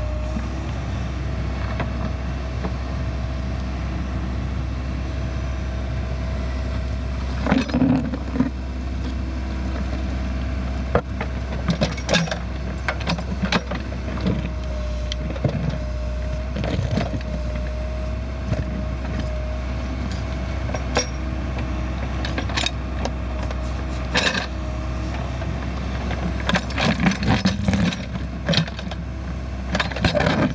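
Case 580L Turbo backhoe's diesel engine running steadily under digging load, with a steady whine over its drone. The hoe bucket scrapes and clunks against rocky clay and stones at intervals, most busily near the end.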